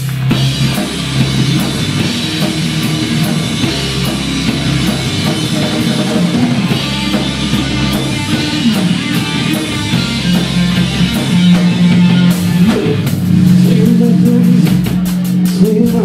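Live rock band playing electric guitars and a drum kit. About twelve seconds in, the drumming turns into a dense run of cymbal and snare hits.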